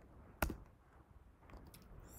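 One sharp keystroke on a computer keyboard about half a second in, the Return key entering a typed terminal command, then faint room tone with a few soft key clicks near the end.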